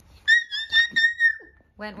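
A small toy whistle blown in a run of short toots at one steady high pitch, lasting about a second and a half.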